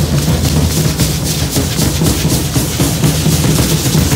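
Drumming for a matachines dance: a fast, steady drum beat with dense sharp strikes.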